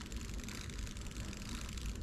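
Zenza Bronica medium-format camera's film-advance crank being wound, a quiet, steady run of fine clicks from the winding mechanism as the freshly loaded 120 roll is advanced past the leader toward frame one.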